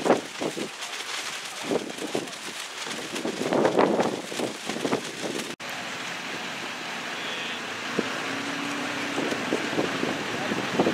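Outdoor background noise: wind on the microphone and indistinct crowd sound, with irregular bursts in the first half. It drops out briefly about halfway through, then goes on as a steadier hiss.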